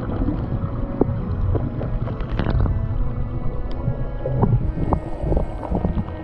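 Underwater sound picked up through a GoPro's housing: a steady low rumble with many scattered clicks and knocks.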